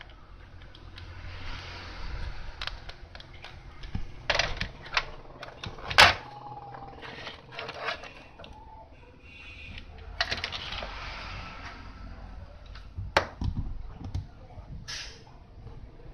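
Scattered clicks and taps with stretches of rustling: the selector knob of an analog multimeter being turned to the 1 kΩ range for a transistor test, and a TV circuit board and test probes being handled. The sharpest click comes about six seconds in.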